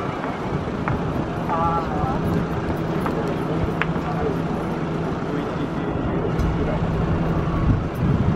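Distant twin-engine jet airliner on its takeoff roll at takeoff power, heard as a steady low rumble with a low hum running through it.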